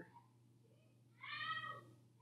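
One short, high-pitched call, a little over a second in and lasting well under a second.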